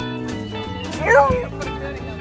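A beagle gives one short yelping bark about a second in, its pitch bending up and down, over background music.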